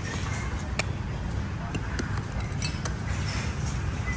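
Scattered light clicks and clinks of a metal knife against a plastic takeaway tub and steel counter as durian flesh is packed, the sharpest a little under a second in, over a steady low background rumble.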